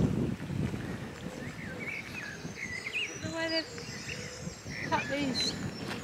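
Birds singing in short chirping and whistled phrases, one a brief steady pitched call midway through, over the irregular crunch of footsteps on a gravel path.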